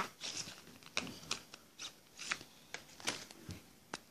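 Faint rustling and rubbing as hands handle a cloth and felt-tip markers, broken by a few light clicks.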